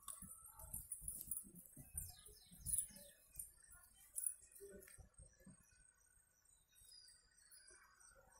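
Faint outdoor ambience: low bumps and rumble from a phone being swung about in the hand, with a few quick high bird chirps about two to three seconds in.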